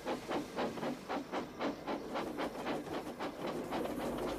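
Steam locomotives chuffing as they pull a train of coaches away from a station, in an even rhythm of about four to five exhaust beats a second.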